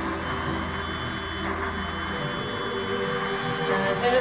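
A jet-powered truck's jet engine running with a steady hiss-like rush, under music with sustained notes.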